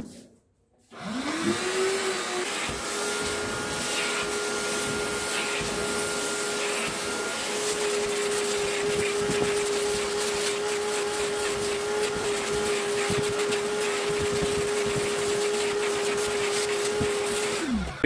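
Canister vacuum cleaner switched on about a second in, its motor rising to speed and then running with a steady hum and rush of suction while it cleans the sofa upholstery, before it is switched off just before the end.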